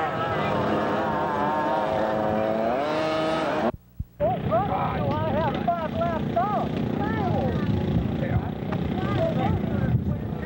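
Go-kart engine running at a steady pitch, then climbing in pitch about three seconds in as the kart accelerates. After a brief break, engine noise continues mixed with short rising-and-falling revs.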